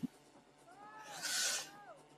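Short transition sound effect under a logo wipe: a whoosh that swells and fades over about a second, starting about half a second in, with several tones that glide up and then back down.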